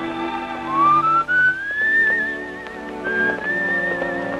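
Film score music: a whistled melody with vibrato, sliding upward into its notes, over a soft orchestral accompaniment.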